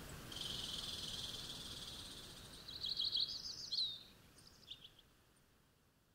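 Small songbird in a nature ambience: a sustained high trill, then a quick run of high, sliding chirps about three seconds in, the loudest part, and a few short chirps after. The whole ambience fades out toward the end.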